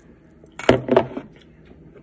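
Fingers pulling a pickle spear out of a glass jar of brine: a sharp clink against the glass about two-thirds of a second in, followed by a short clatter.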